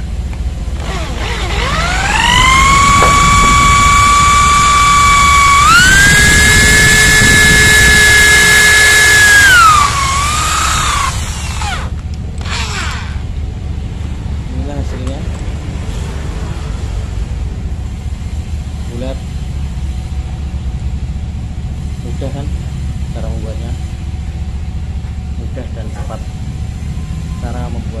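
A power tool's electric motor whines, rising in pitch as it spins up, stepping higher about six seconds in, then dropping and stopping near eleven seconds. After that come a few light, scattered knocks.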